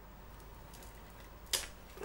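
Stainless blade of an HX Outdoors EDC 020A slip-joint pocket knife slicing through several strands of cheap twisted rope: a few faint fibre crackles, then one short sharp snap about one and a half seconds in as the blade cuts through with little effort.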